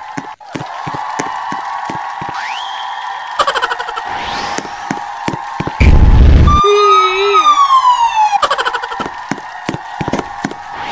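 Cartoon sound effects: a steady siren-like high tone with scattered clicks and a rising whistle, then a loud explosion boom about six seconds in, followed by a falling whistling glide.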